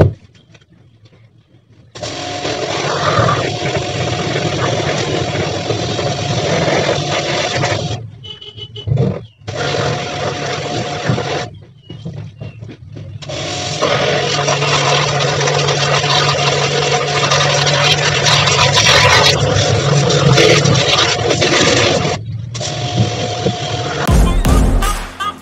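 Pressure washer running: a steady motor hum under the hiss of its water jet. It starts about two seconds in, then cuts off and restarts several times as the spraying stops and resumes.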